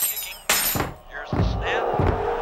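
A sudden crash of something breaking about half a second in, then music with heavy drum hits.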